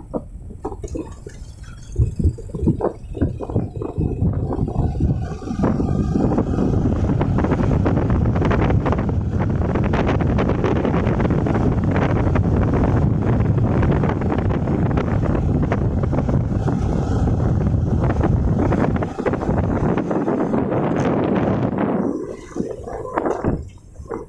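Wind rushing over a handheld phone's microphone while riding along a road: a loud, steady rush from about six seconds in that thins out near the end. Irregular knocks and bumps at the start and near the end.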